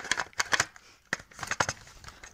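Plastic Lego pieces clicking and clattering as a Lego train wagon is handled, in a quick irregular run of sharp clicks.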